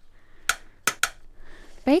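Three short, sharp clicks of hard pieces knocking together: broken pottery and glass shards clinking as a hand handles the debris, the last two close together.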